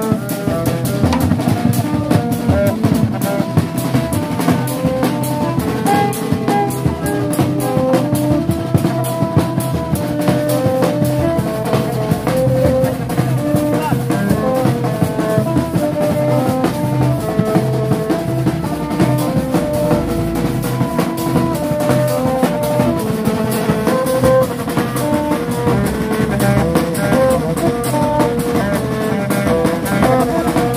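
A street band of drums and long tube trumpets plays a steady, repeating rhythmic tune, with short horn-like notes stepping over a continuous beat.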